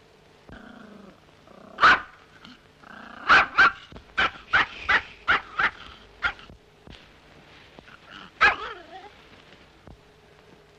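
A dog barking: one bark, then a quick run of about eight, and one more with a falling pitch near the end, over the faint steady hum of an old film soundtrack.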